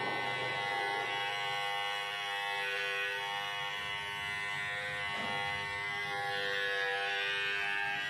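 Cordless electric trimmer buzzing steadily as it is run over the moustache and beard hair.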